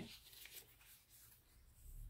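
Near silence, with faint rustling of paper as a journal page is handled and turned.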